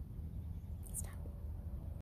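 A short breathy sound, like a soft exhale or whisper, about a second in, over a low steady rumble.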